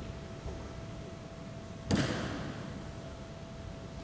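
A kendo strike about two seconds in: a sudden sharp crack and thud of the bamboo shinai hitting and the striker's foot stamping on the wooden gym floor, with a noisy tail that fades over about a second.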